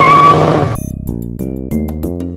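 A car doing a burnout: engine running hard under a loud roar of spinning tires, with a brief high squeal near the start. The sound cuts off abruptly under a second in, and music with evenly struck notes follows.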